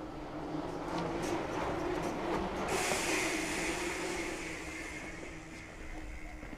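A bicycle rolling past in an echoing concrete underpass: a tyre-and-chain rumble that swells to a peak about three seconds in and then fades away.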